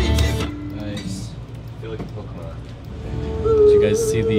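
Guitar-driven pop-punk recording played back over studio monitors, cutting off about half a second in; quieter music and a voice follow, with a held, wavering note near the end.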